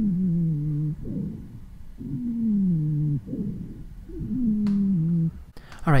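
Wheezing breath sounds: three drawn-out musical tones, each about a second long and falling in pitch, about two seconds apart, with quieter breaths between them. This is the sound of air forced through narrowed airways, as in bronchiolitis.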